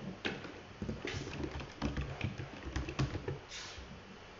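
Computer keyboard being typed on: a run of short, irregular key clicks as numbers are keyed in.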